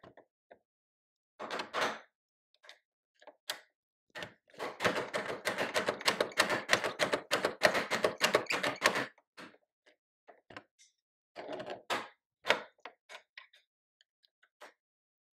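A double-barrel bassoon reed profiler shaving cane: the blade takes a rapid series of scraping strokes for about four seconds in the middle, with scattered clicks and scrapes from the machine before and after. The cane is being cut down only a little at a time.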